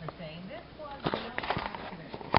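A faint voice in the background during the first second, then a quick cluster of sharp clicks and knocks about a second in, like handling noise from the camera being moved and covered.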